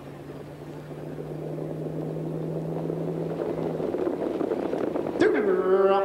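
Background noise of a harness racetrack swelling steadily louder as the field comes to the start, with a low steady hum that stops about four seconds in. Near the end the race caller's voice comes in over the public address.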